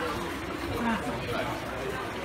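Indistinct background chatter of a small group of people, faint voices over a steady hum.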